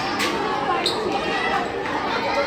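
Children's voices chattering in a large, echoing hall, with two sharp knocks: one just after the start and one a little under a second in.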